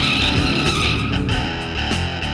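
Rock music with guitar, over the tire squeal of a pickup's burnout that fades out about a second in.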